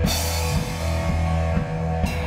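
Rock band playing an instrumental passage of a swamp-rock song: drum kit with a cymbal crash at the start that rings and fades, over bass and guitar.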